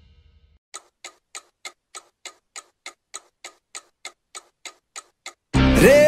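Clock-like ticking, evenly spaced at about three ticks a second, played as a sound effect in a light-and-water show's soundtrack. Near the end, loud music with a singing voice starts abruptly.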